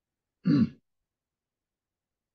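A man briefly clearing his throat, one short sound about half a second in.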